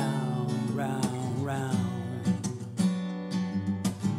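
Old Yamaha steel-string acoustic guitar, unamplified, strummed in chords, with several sharp strums in the second half.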